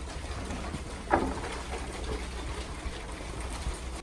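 Rain falling steadily: an even hiss with a low rumble underneath. A brief, short sound stands out about a second in.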